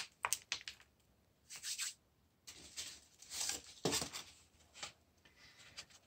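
Hands stirring and scraping moist potting soil mixed with cow manure in an aluminium foil tray: irregular rustling, scraping strokes, several a second at times, with short pauses between.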